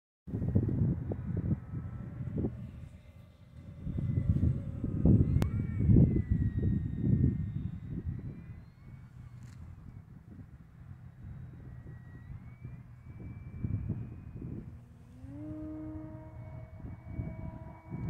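Motor and propeller of an electric Carbon-Z Cub RC plane flying overhead: a thin, high whine that slides up and down in pitch as it passes and the throttle changes. Under it is an irregular low rumble, loudest in the first half.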